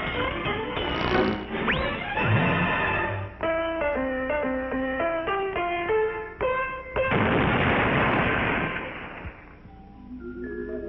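Cartoon soundtrack: busy orchestral underscore, then a simple tune of short single notes. About seven seconds in, a sudden loud explosion cuts the tune off and dies away over about two seconds: the booby trap going off.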